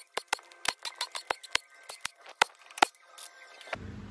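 Small steel 10 mm bolts from a rear main seal cover dropping onto a concrete floor: an irregular scatter of sharp metallic clicks and bounces with a faint ring, thinning out near the end.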